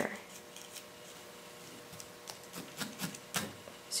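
Faint, scratchy pokes of a felting needle tool stabbing into wool on a felting pad: a few soft clicks, the clearest a little after three seconds in.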